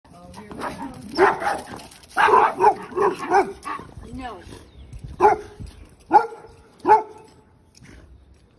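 Dog-aggressive schnauzer barking on the leash in short, sharp barks: a quick run in the first few seconds, then three single barks about a second apart. It is leash-reactive barking aimed at another dog.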